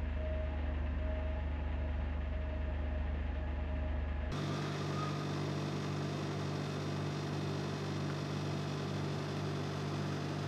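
Steady electrical or mechanical hum with no other events. About four seconds in it switches abruptly to a different, higher-pitched steady hum.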